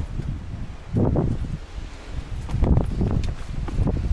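Footsteps and rustling on a rocky path while a handheld camera is carried, with two louder low rumbles about a second in and about three seconds in.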